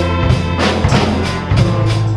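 A student string orchestra with double basses, cellos, harps and a drum kit playing an up-tempo piece: bowed strings and sustained bass notes over a steady drum beat.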